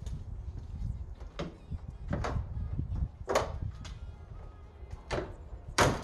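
The GMC Jimmy's hood is shut: a few clunks and knocks as it is handled, then one loud slam near the end.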